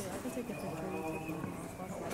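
Indistinct voices of several people talking in the background, too faint for words to be made out.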